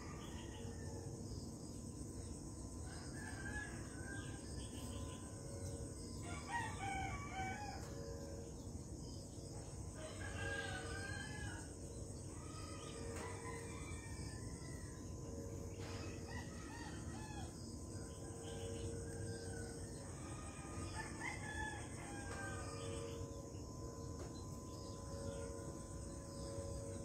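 Faint bird calls, several separate calls a few seconds apart, over a steady high-pitched tone.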